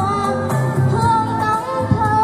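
A young girl singing a song into a microphone, amplified over instrumental backing music, holding long wavering notes.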